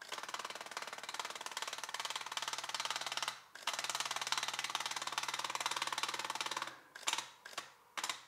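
Cameradactyl Mongoose film holder's motor pulling a 35mm negative strip through its gate, a steady buzzing rattle. It pauses briefly about three and a half seconds in, runs again, and near the end comes in a few short starts: the unit making extra advances where underexposed film reads as a frame gap.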